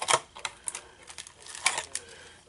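Clear plastic cellophane packets crinkling and clicking as they are handled, a run of irregular sharp crackles.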